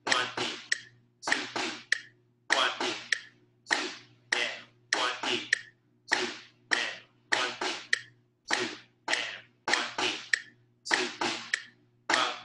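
Snare drum struck with sticks, playing a written sixteenth-note reading exercise: quick clusters of two and three crisp strokes separated by short rests, in a steady pulse. A faint steady hum runs underneath.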